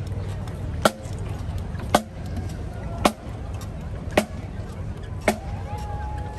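Marching drum corps of snare and bass drums beating a slow, steady march, one loud unison stroke about every second.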